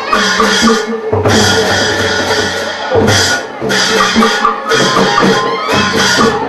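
Burmese nat-festival music: a traditional ensemble playing loudly, with driving drums and percussion under pitched melody.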